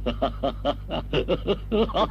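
A man laughing, a quick run of short 'ha-ha' pulses, about five or six a second.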